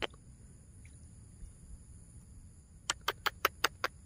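A quick, even run of about seven sharp clicks about three seconds in, after a single click at the start, over a faint steady high-pitched whine.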